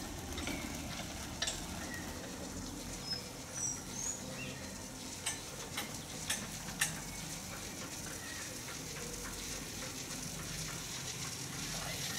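Open-air ride on a single-seat chairlift through woodland: a steady rustling hiss full of faint ticks, with a few sharp clicks in the middle of the ride and short bird chirps about three to four seconds in.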